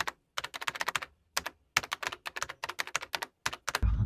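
Keyboard typing sound: a quick, uneven run of key clicks with a few brief pauses, as text is typed into a search bar.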